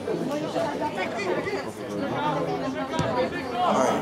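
Several people talking at once nearby, an indistinct chatter of voices, with one sharp knock about three seconds in.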